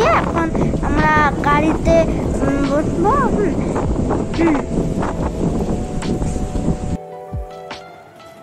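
Wind buffeting the microphone, with people's voices calling over it. About seven seconds in it cuts off abruptly to a much quieter passage with steady musical tones.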